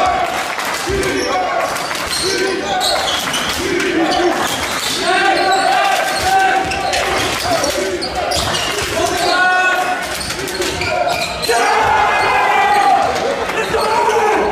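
Basketball being dribbled on a sports-hall floor, bouncing repeatedly, with voices in the hall.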